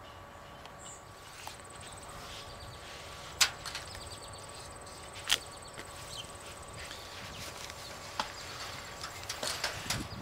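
Footsteps and handling noise from a person walking through a garden, with two sharp knocks about three and a half and five seconds in, and a few lighter ticks near the end.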